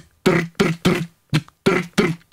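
A man laughing in short rhythmic bursts, about three a second.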